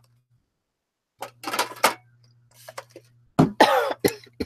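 A woman coughing harshly in two bouts, the second, about three and a half seconds in, the louder, with a voiced rasp like throat clearing; she puts the coughing down to her asthma. The first second or so is dead silent.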